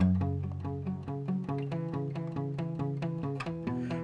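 Steel-string acoustic guitar played with a pick: a quick, even run of alternate-picked notes over a low bass note that rings underneath.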